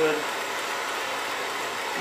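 Blowtorch flame hissing steadily while heating the hot end of a small Stirling engine.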